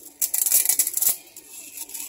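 Dry fettuccine noodles being snapped and crumbled by hand, a dense run of crisp cracking and rattling. It is loudest in the first second and fainter after that.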